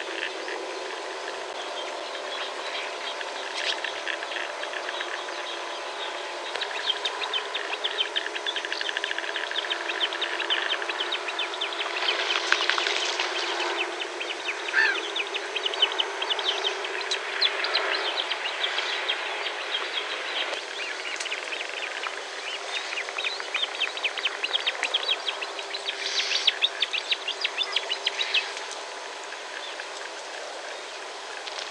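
Birds calling in fast, chattering trills that build up a few seconds in and keep going in overlapping bursts, over a steady background hiss.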